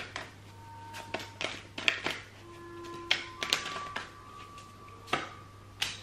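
A tarot deck being shuffled and handled by hand: a dozen or so sharp, irregular clicks and taps of card edges, with faint steady tones underneath.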